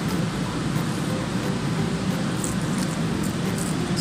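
A steady low hum with an even hiss over it, holding at one level throughout, like running machinery in the background.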